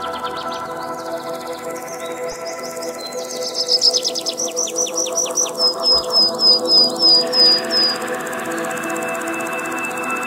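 Ambient music of steady held tones with a songbird singing over it: a quick run of high notes a few seconds in, then a string of repeated slurred whistles, about three or four a second, that stops about eight seconds in.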